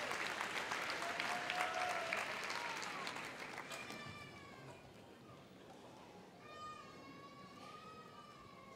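Audience applause and cheering dying away over the first few seconds, with a few drawn-out high calls from the crowd rising over it. By the end, only faint hall sound is left, with one long call.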